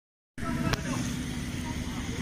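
Outdoor street noise starting about a third of a second in: a steady low rumble with a faint hum, and one sharp click shortly after it begins.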